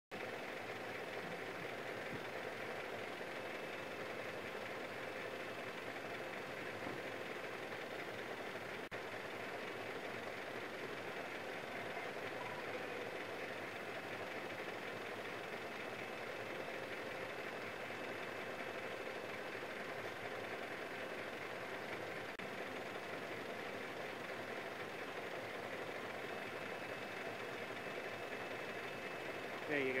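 Steady hum of idling emergency-vehicle engines, with faint voices underneath.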